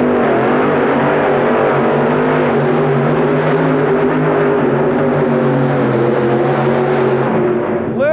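Three-engine supercharged modified pulling tractor running at full throttle under load as it drags a weight-transfer sled, a loud, steady engine note with a slightly wavering pitch. The engines drop off near the end as the pull finishes.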